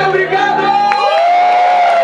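A sung voice holding a long, arching note over pop music, with a crowd cheering and whooping.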